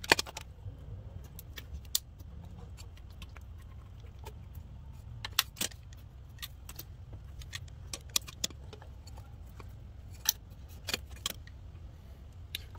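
Pliers and metal hose clamps clinking in a car's engine bay as a coolant heater hose is worked loose: scattered sharp clicks, the loudest right at the start, over a steady low hum.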